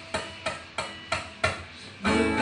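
Acoustic guitar played softly in a quiet break of the song: short, evenly spaced percussive muted notes, about three a second.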